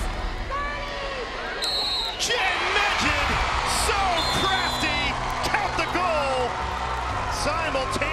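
Live field sound from a women's lacrosse game: players shouting and the crowd, with a few sharp knocks from sticks or ball.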